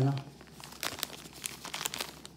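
Thin clear plastic zip bag crinkling as gloved hands handle it, a run of sharp crackles mostly in the second half.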